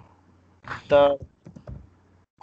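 Computer keyboard typing: a short run of quick keystrokes in the second half, just after a spoken word.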